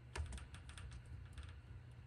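A quick, irregular run of about a dozen light clicks, like tapping or typing, over a faint steady low hum; the first click is the loudest and the run stops about one and a half seconds in.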